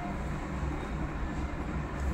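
Steady low background hum with a faint even hiss, and no distinct events.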